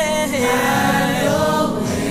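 Gospel choir singing held chords in several voice parts, one voice gliding down in pitch about half a second in.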